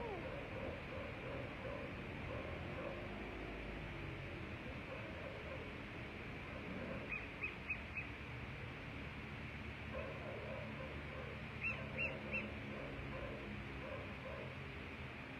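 Adult southern lapwings calling to their chick trapped in a storm drain: a quick run of four short, sharp, high notes about seven seconds in, then three more near the end, over a steady low background noise.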